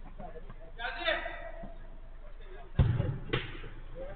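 A football struck hard: a loud, sharp thud about three-quarters of the way through, followed half a second later by a second, lighter smack as the ball hits something, with players shouting.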